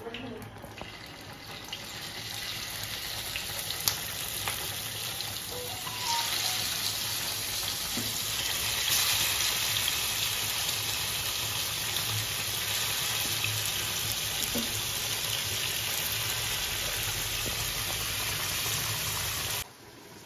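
Marinated chicken pieces sizzling as they fry in hot oil in a non-stick pan. The sizzle grows louder over the first few seconds as more pieces go in, then holds steady, with a few faint clicks, and cuts off just before the end.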